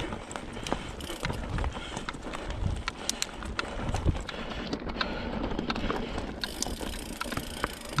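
Mountain bike rolling over a rocky gravel trail: steady tyre noise on stones with frequent sharp rattling clicks from the bike over the rough ground.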